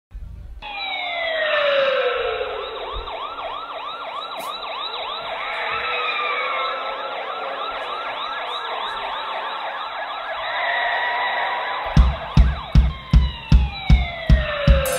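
Recorded police sirens wailing over and over, with long falling tones, played through the PA as a song intro. About twelve seconds in, a kick drum starts a steady beat of roughly two and a half strokes a second.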